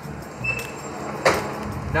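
Steady low rumble of street traffic, with one brief rush of noise a little past halfway through.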